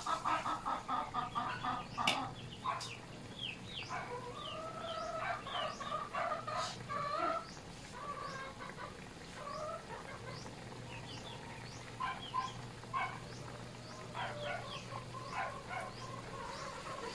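Chickens clucking and giving short chirping calls on and off, over a steady low hum.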